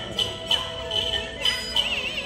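Hainanese opera accompaniment music: a gliding melodic line over quick, sharp percussion strikes, about four a second.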